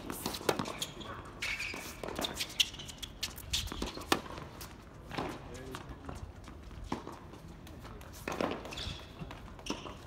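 Scattered footsteps, shoe scuffs and light knocks on a hard tennis court between points, with faint voices.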